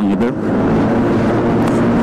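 Yamaha NMAX 155 scooter's single-cylinder four-stroke engine running steadily while cruising at about 60 km/h, over a steady rush of wind and road noise.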